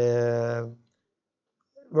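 A man's voice holding one long, level-pitched hesitation sound ("eee") for under a second, then speaking again near the end.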